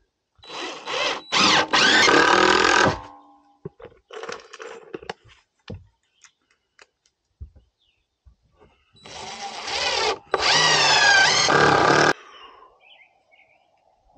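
Cordless drill driving screws into rough-cut lumber stair treads: one run of a few seconds near the start and another about nine seconds in. Within each run the motor's whine glides in pitch as the screw goes in.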